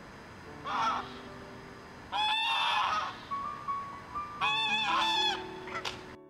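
White domestic geese honking in three loud bouts, with a short call near the end.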